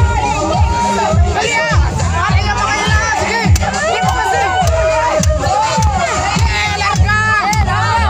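Crowd of onlookers, children among them, shouting and cheering excitedly, over loud music with a steady bass beat about twice a second.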